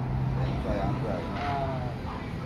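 A vehicle engine running at idle, a steady low hum, under indistinct voices talking.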